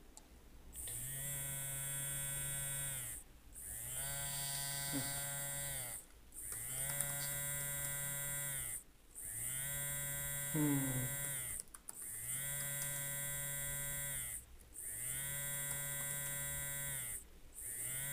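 Mobile phone vibrating for an incoming call, buzzing on the wooden table in repeated pulses of about two seconds with short gaps, each pulse sliding up in pitch as the motor spins up and down as it stops.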